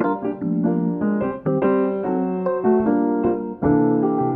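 Slow, gentle jazz on electric and acoustic piano: sustained chords under a melody of single notes, with a new full chord struck near the end.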